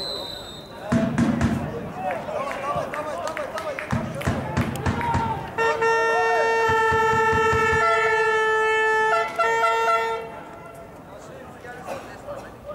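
A horn sounds one long steady blast lasting about three and a half seconds, then a second shorter blast right after. Before it, there are voices.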